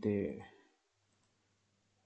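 A man's voice finishing a word, then near silence with only a faint low hum.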